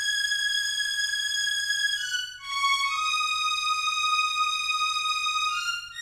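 High synth-string preset from the Purity plugin playing a slow pluggnb melody on its own. It holds a long high note, steps down through a couple of short notes about two seconds in into another long held note, then touches a brief higher note near the end.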